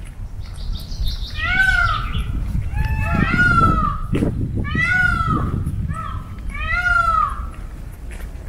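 Indian peafowl (peacocks) calling: four loud cries, each rising and falling in an arch, a little under two seconds apart.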